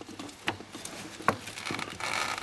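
Light clicks and rustling of gloved hands handling the accelerator pedal lever and its linkage in a car footwell, with two short clicks, about half a second and just over a second in.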